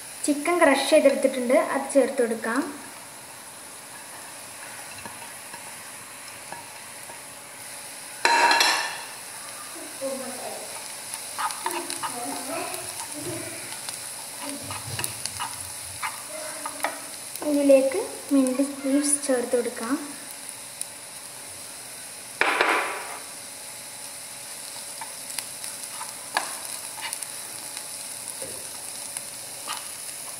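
Chopped onion masala sizzling as it fries in a non-stick pan, stirred and scraped around with a nylon spatula, with sharp louder scrapes about 8 and 22 seconds in. Brief bursts of a wavering pitched sound come near the start and again about 18 seconds in.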